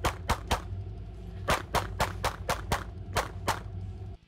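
Shadow Systems DR920 9mm pistol fired rapidly in strings: three quick shots, a pause of about a second, then about eight more in fast succession, under a steady low rumble.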